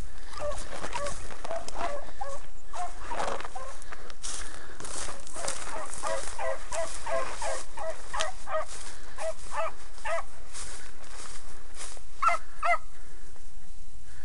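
Beagle hounds baying in short, repeated yelps as they run a rabbit's scent line, the calls stopping about a second before the end. Dry brush rustles steadily underneath.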